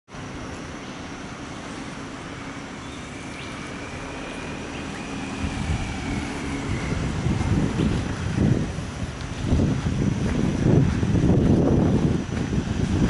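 Vehicle engines running in a parking area: a steady low engine hum, with an irregular low rumble that grows louder from about halfway in.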